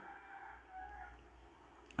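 A faint animal call in the background, lasting about a second, early in a pause between speech.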